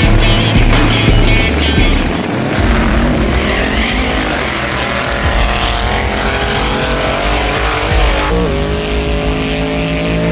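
Rock music for about the first two seconds, then drag-race car engines at full throttle, the pitch climbing as they accelerate away. A little past eight seconds the sound changes to an engine held at steady high revs.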